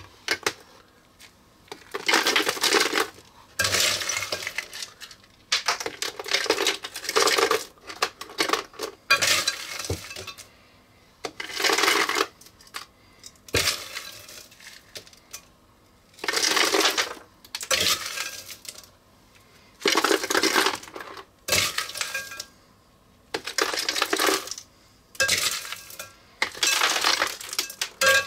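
Ice cubes and salt poured in repeated scoops into a plastic ice cream maker bucket, layering around the canister: about a dozen bursts of clattering and rattling, played back sped up.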